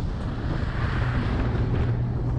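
Mercedes-Maybach S600 driving on a lane: steady road and wind noise over a low hum, swelling a little about a second in as an oncoming lorry passes.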